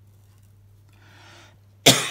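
A person's single loud cough near the end, after a faint breath in about a second in.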